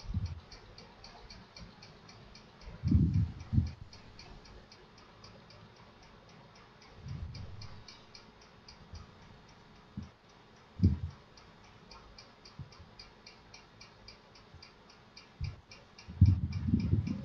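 Faint, steady, evenly spaced ticking runs throughout. A few short, low thumps or bumps come about three, eight and eleven seconds in.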